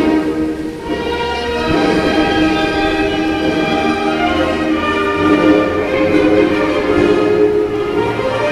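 Orchestral music led by bowed strings, playing slow, held notes that change about every second.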